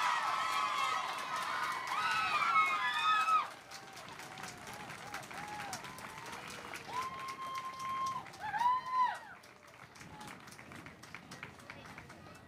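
Crowd applauding with high-pitched cheers and whoops, loudest for the first few seconds and then dropping off. A second burst of whoops comes a few seconds later, and scattered claps follow near the end.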